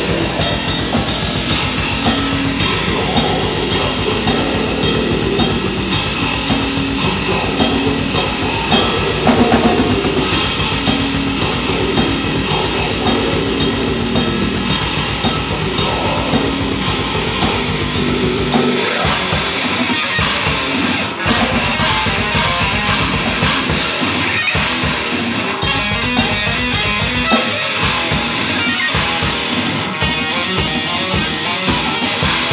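Live instrumental technical death metal from a distorted extended-range electric guitar and a drum kit, with dense, fast drumming. About 19 seconds in, the low end breaks into short stop-start chugs with brief gaps.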